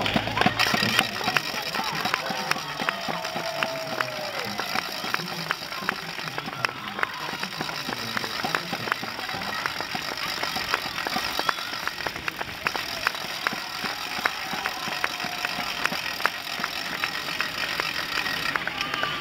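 Spectators clapping by hand, with irregular claps running on throughout, and a few brief shouts of encouragement as a group of racing cyclists rides past.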